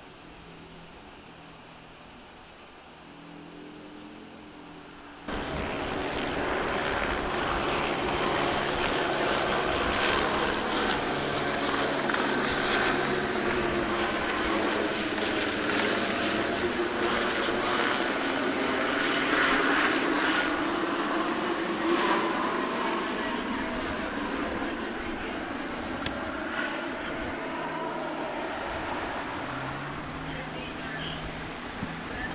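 A low, steady hum for about five seconds, then a sudden switch to loud, steady aircraft engine noise overhead, with slowly drifting tones, that goes on for the rest of the time.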